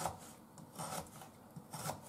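Kitchen knife slicing a raw carrot into rounds on a cutting board: three slow, scraping cuts just under a second apart.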